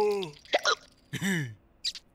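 Cartoon cat hiccuping: two short voiced 'hic' sounds, each falling in pitch, about a second apart, with small ticks between them.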